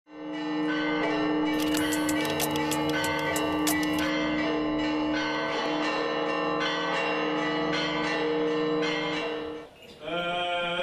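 Church bells ringing in a busy peal of many overlapping strokes, with a burst of rapid high strikes in the first half. The ringing stops suddenly just before the end.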